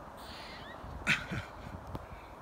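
Eastern gray squirrel giving a hoarse, cat-like meowing call with a falling pitch, then a louder sharp call about a second in. A few low bumps follow.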